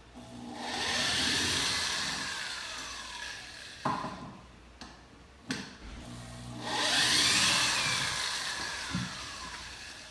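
Corded electric drill backing screws out of a plywood crate lid. It runs twice for a few seconds each time, and its whine falls in pitch through each run. A few short knocks come between the runs.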